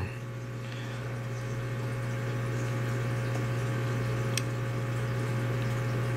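A steady low hum over a faint hiss, with a single small click about four seconds in.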